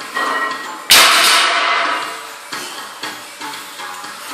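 Barbell loaded with 250 kg of plates set down on the gym floor about a second in: a loud crash of the plates that rings away over a second or so, followed by a few smaller knocks.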